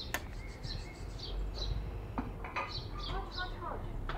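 Small songbirds chirping in short, scattered calls, with a few quick falling notes about three seconds in, over a faint low background rumble.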